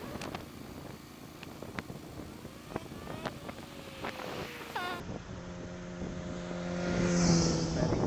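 Motorcycle engine running at low revs with a steady hum that swells louder in the second half, with short clicks and chirps over it in the first few seconds.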